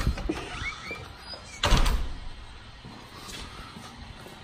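A house door being opened and shut as someone goes out, with one loud thud a little before halfway.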